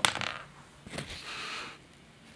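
A small dried fish clattering onto a hardwood floor in a few quick ticks, followed about a second in by a short soft scraping hiss.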